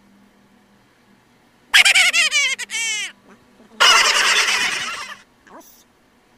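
A bird, fowl-like, calling loudly twice. The first call comes about two seconds in and breaks into quick falling notes; the second, longer and harsher, follows about a second later.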